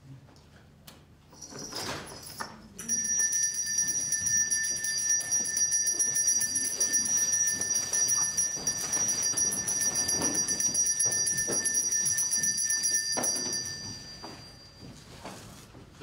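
A small brass handbell rung continuously for about ten seconds, starting about three seconds in, then stopped so that its ring fades away. A few clunks come just before the ringing begins.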